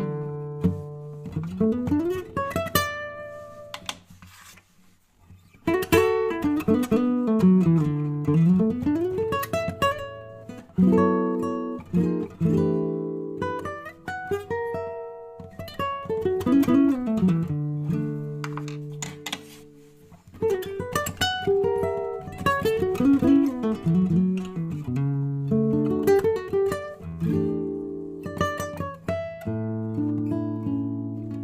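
Nylon-string classical guitar played with a pick: single-note runs sweeping up and down, and plucked chords. Partway through, the pick changes from a curly birch wooden pick to a plastic one. The notes die away into a short pause about four seconds in.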